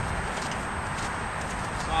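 A Friesian horse's hoofbeats on the soft dirt of a round pen, heard under a steady background hiss.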